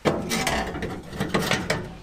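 A dense run of clicks and creaks from steel under load, starting suddenly, as a Porta-Power hydraulic ram forces out the caved-in cab sheet metal of a 1976 Chevy K10.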